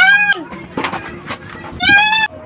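A man's high-pitched, shrieking laughter in wavering bursts: one at the start and another near the end, with a few clicks between.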